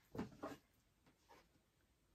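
Near silence, with a few soft, brief rustles of oracle cards being handled in the first half second and once more faintly a little past one second.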